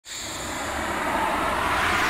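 A rushing whoosh that starts suddenly and swells steadily louder: an intro sound effect.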